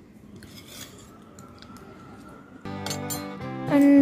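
A few light clinks of a steel spoon against a steel plate. About two-thirds of the way in, background music starts and grows louder, becoming the loudest sound.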